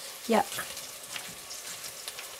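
Food sizzling as it is sautéed in a pan on the stove, with scattered light clicks from stirring.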